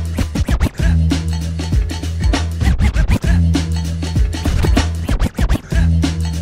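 Hip hop DJ mix: a beat with a held bass phrase repeating about every two and a half seconds, and vinyl scratching on a turntable cutting in with quick clicks and pitch sweeps between the bass notes.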